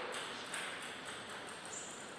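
A table tennis ball bouncing about six times, each bounce a sharp click, the bounces coming slightly quicker and fainter as the ball settles.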